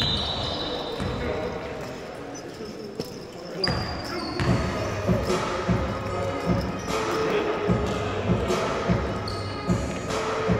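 Basketball being dribbled on a hardwood gym floor: a regular run of bounces starting about four seconds in, with a brief high whistle tone as they begin. The room echoes.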